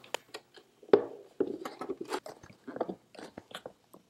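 Plastic headlight housing being handled and fitted together: scattered small clicks, crackles and scrapes of plastic, the loudest about a second in.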